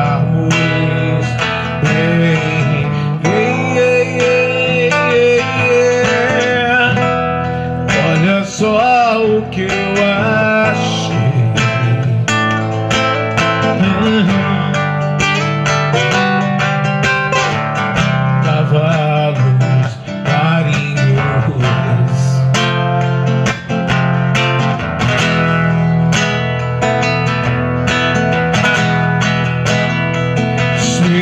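Live song: a man singing over a strummed acoustic guitar, a Vogga, played through an amplifier.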